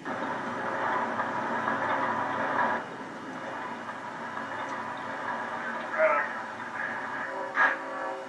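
Two-way radio static, a narrow-band hiss for about three seconds that then drops to a quieter steady hiss.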